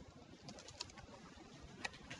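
Faint computer keyboard typing: a few scattered key clicks, the sharpest one near the end, over low room noise.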